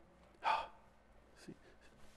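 A man's single short, sharp breath about half a second in.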